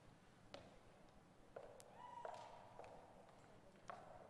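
Near silence with a few faint footsteps and light knocks on a wooden gym floor as people stand up and walk, plus a faint short tone about halfway through.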